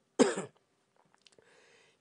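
A man gives one short cough, about a quarter of a second in.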